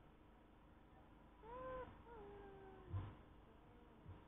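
A cat meowing twice: a short arched meow about one and a half seconds in, then a longer one that slides down in pitch. A dull thump follows, about three seconds in.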